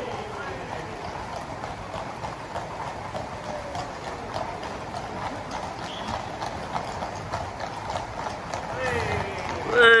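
Hooves of a group of ridden horses clip-clopping at a walk on a tarmac road. Near the end a loud shout falls in pitch.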